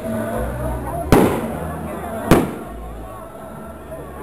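Two sharp firecracker bangs about a second apart, each trailing off in a short echo.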